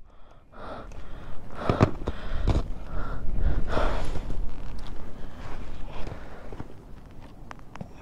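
Footsteps and body movement in deep snow: irregular crunching and swishing with the rustle of winter clothing, and breathing close to the microphone.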